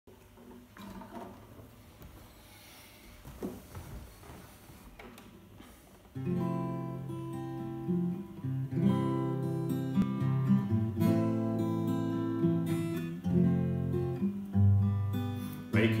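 Faint shuffling and a knock, then about six seconds in a Seagull steel-string acoustic guitar starts playing a chord intro, chords held and changing about once a second.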